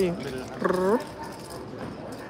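A short, drawn-out vocal sound with a dipping pitch, lasting under half a second, over a murmur of table chatter.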